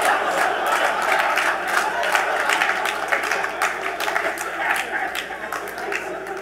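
Audience clapping and laughing, many overlapping claps over crowd noise, the applause thinning out and fading toward the end.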